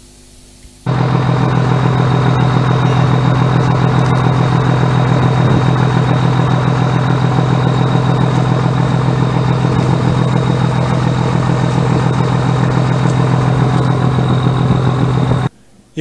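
A boat engine running loudly and steadily. It starts about a second in and cuts off shortly before the end.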